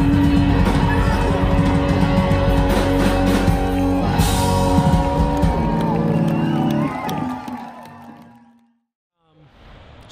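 A full rock band playing live with vocals, electric guitars and drums, heard from within the audience. The music fades out about eight seconds in, leaving a moment of silence.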